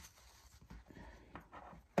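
Faint handling sounds of hands working fabric gardening gloves and a plastic zip tie, with a light click at the start and another about a second and a half in.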